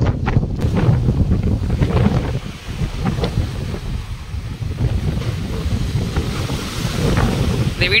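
Strong wind buffeting the microphone with a continuous low rumble, over the hiss of sea waves breaking on a rocky shore, the surf hiss growing stronger in the second half.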